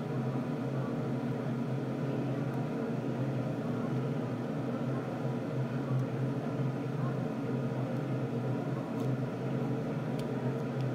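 A steady machine hum with several fixed tones, with a few faint plastic clicks from a toy car and its launcher being handled.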